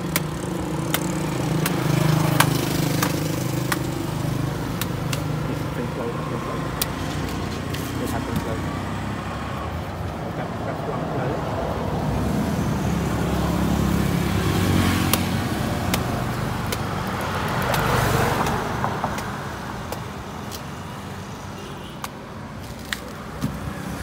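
Voices talking over road traffic, with vehicles passing; one passes loudest about four-fifths of the way in. A few sharp clicks or knocks sound now and then.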